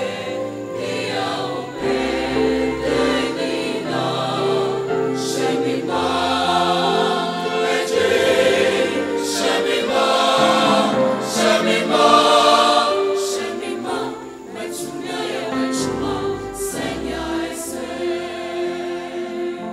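Mixed choir of men's and women's voices singing a sacred choral piece in harmony, with low sustained bass notes beneath. The singing swells to its loudest about two-thirds of the way through, then drops back briefly.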